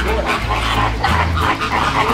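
A large flock of flamingos calling, many short calls overlapping in a dense chatter.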